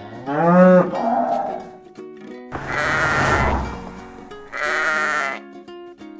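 Cartoon farm-animal calls over light plucked-string background music: a cow's moo rising in pitch just after the start, a long, harsh call about halfway, and a sheep's bleat near the end.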